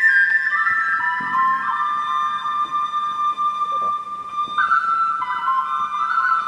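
A flute plays a slow melody of long held notes, stepping down about a second in and back up at about four and a half seconds.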